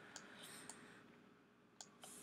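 Near silence with a few faint clicks and one sharper click near the end, from a computer mouse button.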